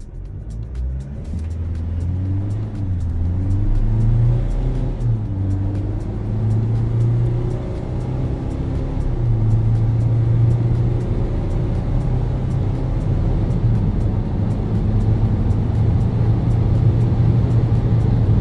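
GWM P-Series LTD's 2.0-litre turbodiesel engine pulling hard under full throttle in a 0–100 km/h launch, heard from inside the cabin; its pitch climbs and drops back at each upshift in the first few seconds, then holds steady as the truck keeps accelerating. Background music with a steady beat plays over it.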